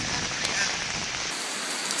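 Heavy rain pouring down, a steady hiss of rain. A little past halfway the sound changes suddenly, losing its low rumble and turning brighter.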